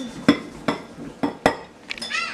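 A small metal scoop tapping against a glass measuring cup, about five sharp clinks spaced unevenly, knocking the last of the coconut out into the jar.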